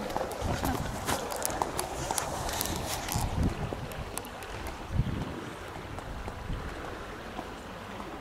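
Footsteps on stone paving with knocks and rubbing from a handheld camera being swung round. The knocks come close together for the first three seconds or so, with two heavier thumps about three and a half and five seconds in.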